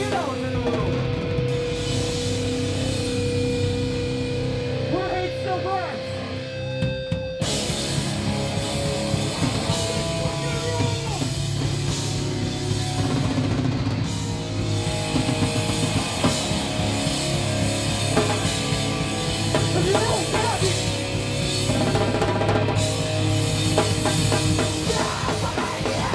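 Heavy rock band playing live, with distorted guitar, drum kit and shouted vocals. A steady held note carries the first seven seconds, then the full band with drums and cymbals comes in abruptly.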